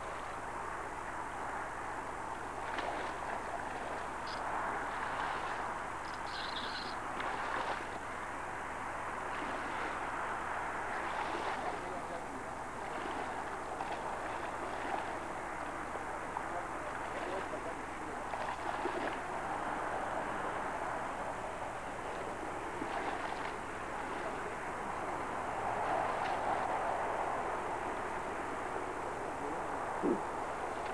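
Indistinct voices over a steady wash of outdoor noise, with occasional short sloshes and knocks from wading through shallow muddy water.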